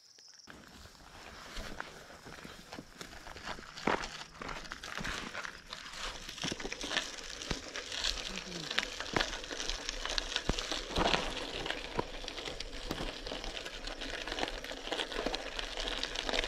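32 mm gravel bike tyres rolling over a dirt and gravel trail: a steady crunchy crackle full of small pops and ticks from grit under the tread. It builds up over the first few seconds as the bike gets moving.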